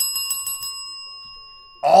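A bell rung to mark a big hit: a quick trill of strikes, then a bright ringing tone that fades over about a second and a half.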